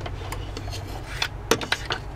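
Hands handling a loose circuit board on a plywood countertop: light rubbing and scraping with a few sharp clicks and knocks, the clearest about one and a half seconds in, over a steady low hum.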